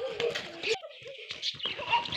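Young children's voices calling out while they play, with a short lull about a second in.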